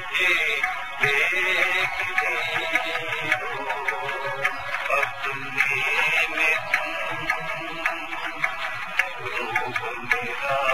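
Instrumental interlude of a Hindi song: melody instruments play over a light, regular percussion beat, with no singing.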